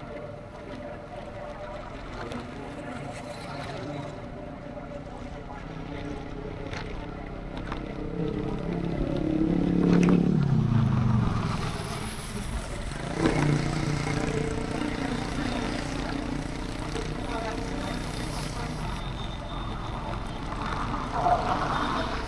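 Motorcycle ride: an engine running steadily under road and wind noise. About ten seconds in, another motorcycle passes close by, the loudest moment, its engine pitch falling as it goes past.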